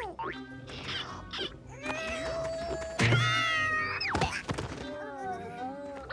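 Cartoon background music with comic sound effects: gliding, sliding tones and a heavy thud about three seconds in.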